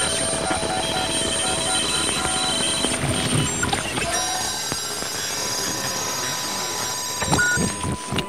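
Several radios being tuned across the dial: a dense hiss of static crossed by steady whistling tones, some pulsing on and off. The tones change about halfway through.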